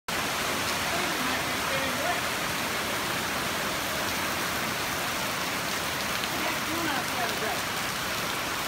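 Heavy rain pouring steadily onto palm fronds, trees and the street, an even hiss.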